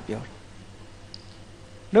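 A pause in a man's speech: low room tone with one faint, short click about halfway through. Speech trails off at the start and resumes at the very end.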